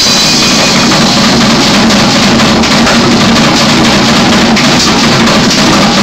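Live band playing loudly and continuously, with electric bass, drum kit and congas, and a held low bass line running through.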